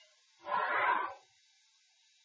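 A pencil line drawn along a wooden straightedge on drawing paper: a single stroke of graphite on paper lasting under a second, about half a second in.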